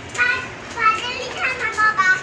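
A young child calling out several short, high-pitched cries.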